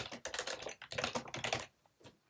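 Computer keyboard typing: a quick run of key clicks as a short phrase is typed, stopping shortly before the end.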